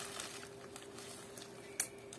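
Faint handling of a puffy plastic mailer package, with light rustles and small taps and one sharp click near the end.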